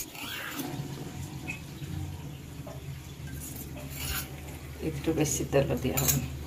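Cooking oil poured from a small steel bowl into an empty aluminium kadai, with a spoon scraping the bowl, over a steady low hum.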